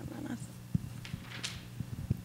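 A low, steady electrical hum under soft room noise: a few scattered soft knocks and a brief hissing rustle about one and a half seconds in.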